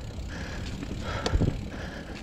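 Mountain bike rolling along a leaf-covered dirt trail: a steady low rumble of tyres and wind on the mic, with a sharp knock from the bike about a second and a half in as it goes over a bump.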